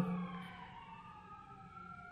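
A faint, distant siren wailing, its pitch sliding slowly up and down, with the fading echo of a man's voice at the start.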